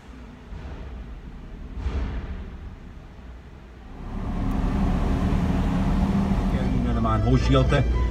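Low steady rumble inside a car, which grows louder about halfway through, with a voice or singing coming in near the end.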